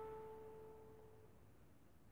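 A single note on a steel-string acoustic guitar rings on from its pluck and fades away over about the first second, leaving near silence.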